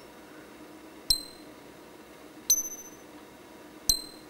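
Eurorack synthesizer voice ring-modulated (four-quadrant multiplication) in a bipolar VCA and gated by a second VCA with exponential response, giving three short percussive pings about 1.4 s apart. Each strikes sharply and its high, ringing overtones die away quickly.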